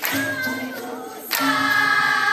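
Dikir barat chorus singing together over percussion. A sharp hit comes about a second and a half in, and the chorus then comes in louder on a long held note.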